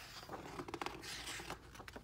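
A page of a hardcover picture book being turned by hand: a soft paper rustle with a few small clicks, lasting about a second and a half.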